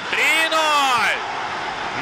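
A football commentator's long, drawn-out goal shout, rising then falling in pitch and lasting a little over a second, followed by steady stadium crowd noise.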